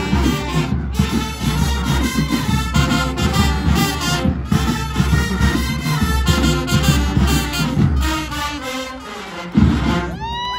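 Marching band playing a tune, brass to the fore over heavy low notes, dipping in level near the end.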